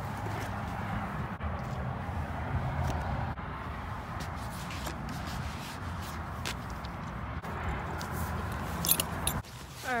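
Steady rustling and rubbing noise close on the phone microphone, with a few faint clicks, while a western saddle is handled on a horse; it cuts off suddenly near the end.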